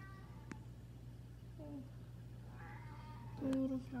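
A high, rising-and-falling meow-like cry about three seconds in, after a shorter lower call, then a louder voice near the end, over a steady low hum.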